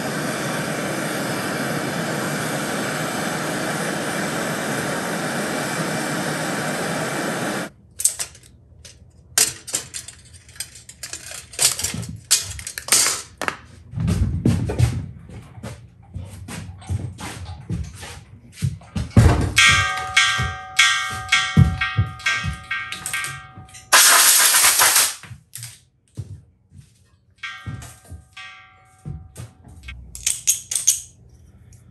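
A gas torch flame hisses steadily for about eight seconds while heating brass crown parts for joining, then cuts off suddenly. Metal taps, knocks and clinks follow, with a loud burst of noise near the end.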